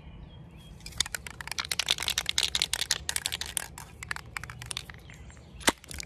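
Aerosol spray-paint can being shaken, its mixing ball rattling in a fast run of clicks for about three seconds. One sharp snap near the end as a can's plastic cap is pried off.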